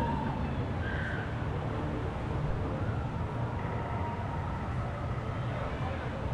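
Woody Woodpecker's Nuthouse Coaster, a small steel family roller coaster, with its train rolling along the track in a steady low rumble. Faint, wavering high voices sound over it.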